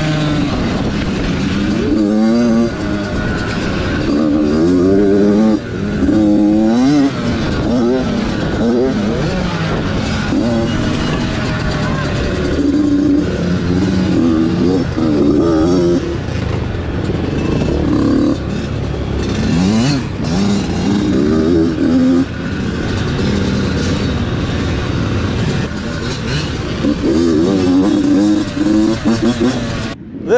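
Small Yamaha two-stroke dirt bike engine, heard up close from the handlebars, revving up and falling back again and again as it is ridden around a motocross track, with other small dirt bikes running alongside.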